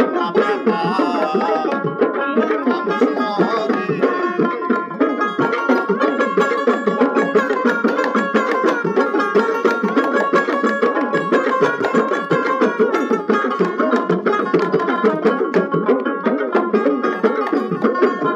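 Bengali Baul folk music: a plucked dotara over a fast, steady hand-drum rhythm.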